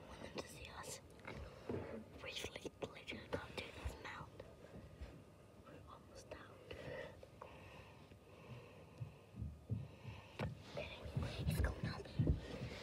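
A person whispering in short, broken phrases, with scattered clicks and rustles close to the microphone.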